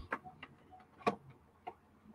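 A few faint, irregular clicks and taps, the largest about a second in.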